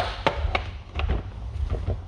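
Baltic birch plywood divider pieces clacking and knocking against the wooden basket as they are slotted into place. There is one sharp knock at the start, then several lighter taps over the next second, and a few faint ones near the end.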